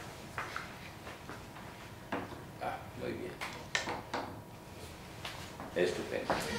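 Faint, indistinct talk with a few light clicks and knocks scattered through it, like small objects being handled at a desk.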